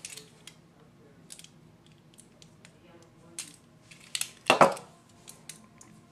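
Small hard objects handled by hand: a few light clicks and taps, with a louder clatter of sharp clicks about four and a half seconds in, as batteries are got ready to go into the headphones' battery compartment.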